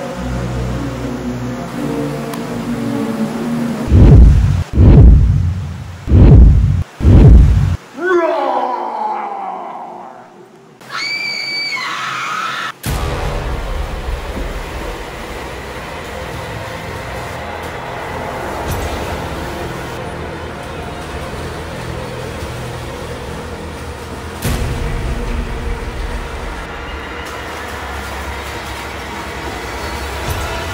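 A horror-style soundtrack: four loud, deep booming hits, a long falling glide, then a brief high shriek. After that a steady rumbling noise runs on, with splashing as someone runs through shallow water in a concrete tunnel, and a single thump near the end.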